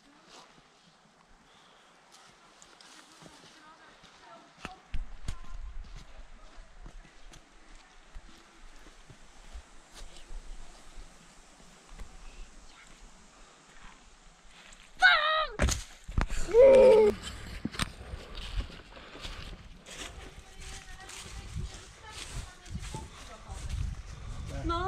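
Quiet outdoor sound with faint scuffs and knocks of footsteps on rock, a low rumble coming in about five seconds in. About fifteen seconds in, a person's voice calls out loudly for a couple of seconds.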